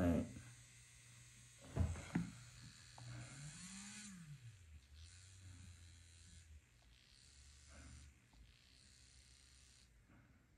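Electric nail drill's motor running faintly, its pitch rising and then dropping about four seconds in as the speed is changed, then running on at a low speed. A short knock comes about two seconds in.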